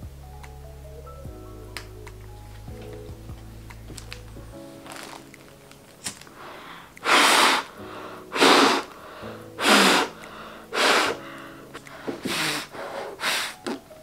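A person blowing hard through a valved N95 respirator mask: six forceful puffs of breath about a second or so apart, the last two weaker, over soft background music.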